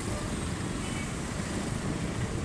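Steady street traffic noise, an even hum and hiss with no single event standing out.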